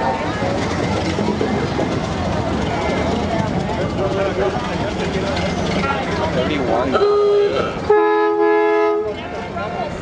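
Vehicle horn sounding twice over crowd chatter: a short single-note honk about seven seconds in, then a longer two-note blast about a second later.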